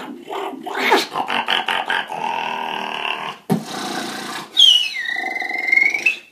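Solo human beatboxing: a fast run of clicks and snare-like hits, then a held buzzing bass, a sharp kick about three and a half seconds in, and near the end a high whistled tone that slides down and levels off over a low vocal hum.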